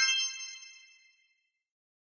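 A single bright, high-pitched chime sound effect ringing and fading out over about a second.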